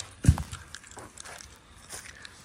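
A single dull thump just after the start, followed by light crackling and scattered clicks of footsteps through dry fallen leaves.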